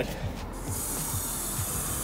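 Garden hose spray nozzle turned on about half a second in, water hissing steadily as it sprays into a frozen T-shirt to thaw it.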